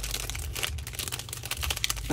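Clear cellophane bag crinkling as hands pull it open: a steady run of small, irregular crackles.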